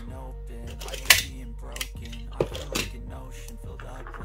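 Quiet background music with steady held notes, over a few sharp handling clicks and rustles from plastic cable connectors and masking tape. The loudest is a sharp click or rip about a second in.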